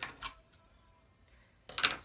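Brief handling noises: a short rustle right at the start, then a louder scrape near the end as a pair of scissors is taken up off the wooden table to cut the cotton twine.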